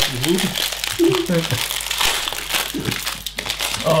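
Thin plastic LEGO parts bags crinkling and rustling as they are handled and opened on the table.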